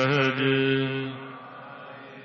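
A voice chanting Gurbani, holding one long wavering note that fades about a second in, leaving a quieter sustained tone.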